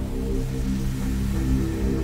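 Omnisphere software synthesizer playing a sustained chord of layered synth tones while the mod wheel sweeps across stacked patches, so the sound changes over from one patch to another. The changeover between patches is abrupt, which is described as quite jerky.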